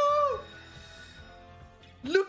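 A man's long, drawn-out "oh" of disbelief that falls away about half a second in, then faint slot-game background music.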